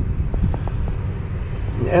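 Steady low outdoor rumble with a few faint clicks about half a second in; a man starts speaking near the end.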